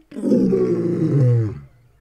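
A deep, loud animal roar lasting about a second and a half, dropping in pitch as it ends.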